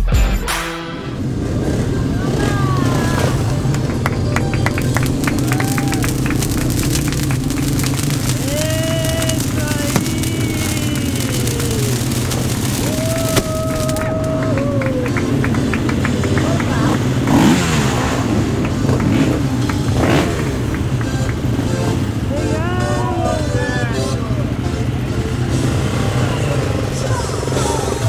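Dirt-bike engines running at low revs, with people shouting and whooping over them and music underneath.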